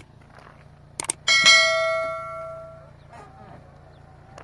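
Subscribe-button animation sound effect: two quick mouse clicks about a second in, then a notification bell ding that rings out and fades over about a second and a half.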